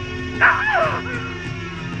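Sustained dramatic film-score music, with a woman's short, pitch-gliding cry about half a second in: a trapped victim crying out to be let out.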